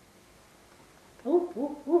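A person's voice making three quick short hooting calls, each rising and then holding, starting after a second of quiet.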